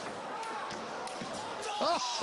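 Celluloid-style table tennis ball clicking sharply off the bats and table during a rally, over the murmur of an arena crowd. Near the end comes a loud, short shouted cry as the point is won.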